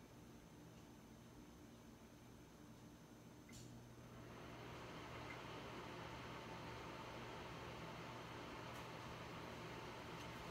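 A faint click, then a steady low electrical hum with a light hiss as power comes back to a Frigidaire electric range and its repaired oven control board powers up.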